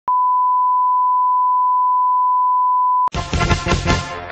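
A steady, unwavering beep on a single pitch, a line-up test tone, held for about three seconds and then cut off sharply. Music with a beat starts right after it.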